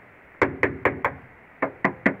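Rapping on the bare sheet-metal trunk pan of a 1967 Camaro, each knock ringing briefly: four knocks, then after a short pause two more. The sound shows the pan is solid metal.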